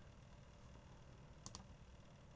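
Near silence: faint room tone, with two quick faint clicks about one and a half seconds in.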